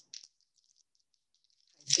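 Near silence: a pause in a woman's speech, with a few faint ticks early on, before her voice comes back near the end.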